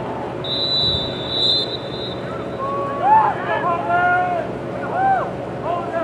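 A referee's whistle blows once, one steady shrill note of a little over a second starting about half a second in, over steady wind noise on the microphone. Distant voices then shout and call out across the field.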